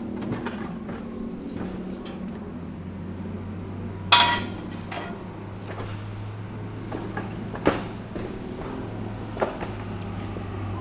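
Steel pipe and bar stock clanking as they are handled and set into a cut-off saw's vise. The loudest is a single ringing metallic clang about four seconds in, with a few lighter knocks after it, over a steady low hum.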